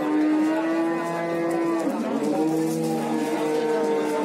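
Cow mooing: two long, drawn-out moos, the second lower in pitch than the first.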